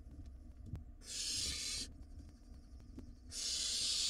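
Barn owl nestlings hissing: two long, noisy hisses of about a second each, the first about a second in and the second near the end.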